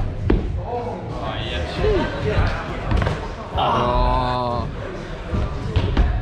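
Trainers landing on and pushing off hollow plywood parkour boxes, making sharp hollow thuds, the clearest one just after the start, in a large echoing hall. Voices are heard throughout, with one drawn-out vocal sound held for about a second midway.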